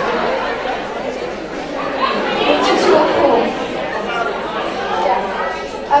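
Many voices talking over one another: overlapping chatter from a group of people in a room.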